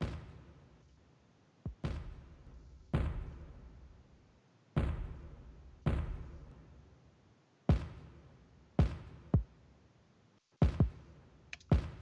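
Two layered kick drums played back on their own in a sparse, uneven pattern: about ten thuddy, knocky hits, each with a short decaying tail, some landing as quick doubles. The playback is showing the definition between the two kick layers after processing.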